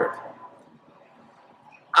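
A man's speaking voice trailing off, then a pause of about a second and a half with only faint background, then his voice starting again at the very end.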